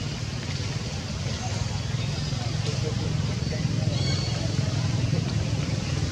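Steady low outdoor rumble with faint background voices, and a brief high chirp about four seconds in.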